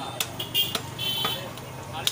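Butcher's cleaver chopping goat meat and bone on a wooden tree-stump block: a few sharp strikes spread through the two seconds, with short high tones in the background.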